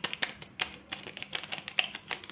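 Paper sachet of baking powder being tapped and shaken over a glass mixing bowl: a quick, irregular run of light crackling taps, several a second.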